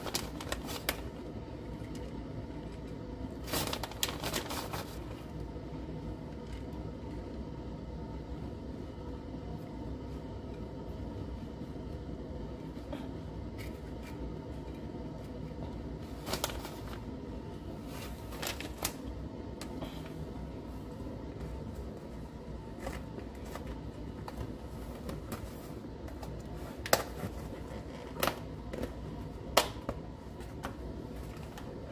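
Plastic shredded-cheese bag crinkling and light handling clicks as shredded cheese is sprinkled into hard taco shells. They come in short clusters, a few seconds in, in the middle and near the end, over a steady low background hum.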